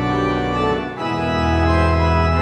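Pipe organ playing sustained full chords. About a second in, the loudness dips briefly and the chord changes, and a new deep bass note enters.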